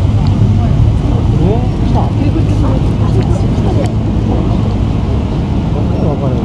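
Cars of a motorcade passing slowly, a steady low rumble of engines and tyres, with the chatter of onlookers' voices over it.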